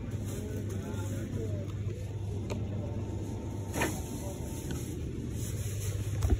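Steady low hum of shop refrigeration, with faint voices in the background during the first second or two and a couple of light clicks.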